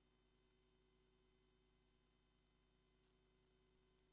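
Near silence, with only a faint steady hum.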